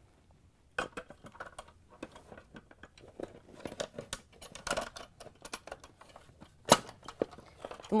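Clear plastic ice dispenser auger with its metal crushing blades being fitted back into its plastic ice bucket housing: irregular plastic clicks, knocks and scrapes, with one sharp click near the end.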